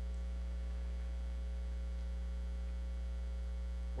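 Steady electrical mains hum with a string of overtones, unchanging in level; nothing else is heard.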